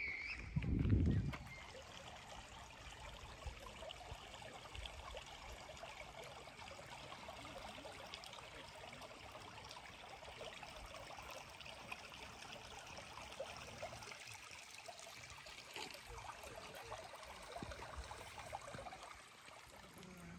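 A shallow creek trickling steadily over stones. A brief low rumble sounds about a second in.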